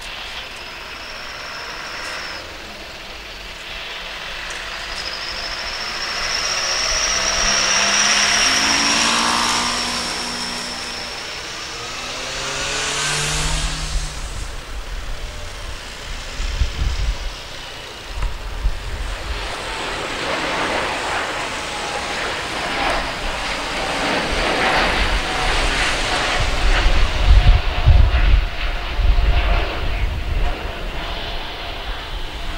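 An Airbus A350-900's Rolls-Royce Trent XWB turbofans at takeoff power, taking off and climbing away. A high whine swells and then slides down in pitch as the jet passes. A deep, rough rumble follows and grows louder, loudest near the end.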